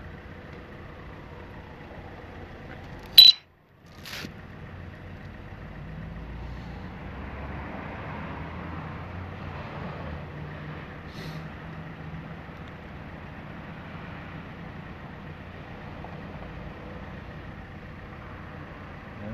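Steady outdoor traffic noise with a faint low engine drone. About three seconds in, a sharp click and a brief drop to silence, then another click, break the sound.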